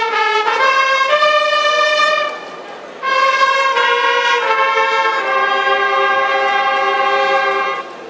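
Fanfare of long straight herald trumpets playing held chords in two phrases. The first steps up in pitch and breaks off after about two seconds. The second comes in a second later and is held until near the end.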